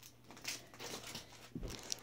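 Faint rustling and shuffling of children moving about close to the phone, with a soft thump a little past halfway.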